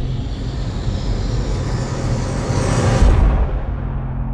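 Sound effect for an animated logo: a rush of noise that swells to a loud hit about three seconds in. The highs then fade away and leave a low, steady drone.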